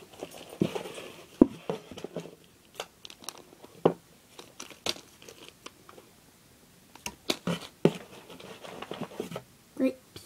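Clear plastic bag holding small erasers being handled: the plastic crinkles and the erasers inside knock and click in irregular short bursts.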